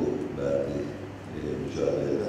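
A man speaking in Turkish into press-conference microphones, his voice continuing in short syllable-like swells.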